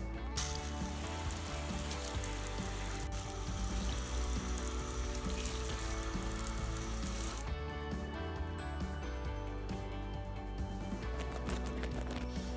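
Garden hose spray nozzle on its shower setting, spraying water onto wooden obstacles. It starts just after the beginning, runs as a steady hiss and cuts off suddenly about seven and a half seconds in. Background music plays throughout.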